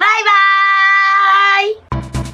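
A woman's voice calling out one long, high, drawn-out note in a sing-song cheer, held for about a second and a half with a slight lift at the end. Upbeat electronic music cuts in just before the end.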